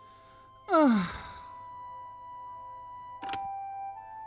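A man sighs heavily, his voice falling in pitch, about a second in, over soft sustained background music. A short click follows near the end.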